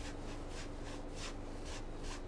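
Paintbrush brushing across a canvas, blending wet paint in short repeated strokes about two a second, each a soft swish.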